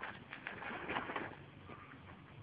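A horse nosing and chewing in a feed bag, the bag crinkling and rustling in irregular bursts, loudest about a second in.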